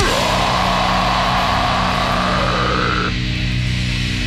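Heavy band playing live: a distorted guitar and bass chord is held with the drums stopped, and a high held tone slowly rises above it until it cuts off about three seconds in.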